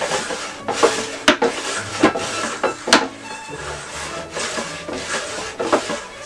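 Wooden box fiber picker worked back and forth, its nail-toothed top sliding over the teeth in the base and tearing through mohair: a scraping rasp with a sharp wooden knock at the end of several strokes, about a second apart. Background music underneath.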